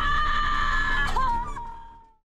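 A woman's long, high-pitched scream held at one pitch. It wavers about a second in, then fades out near the end over background music.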